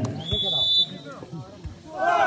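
A referee's whistle is blown once: a single short, high, steady blast lasting under a second, over nearby spectators talking.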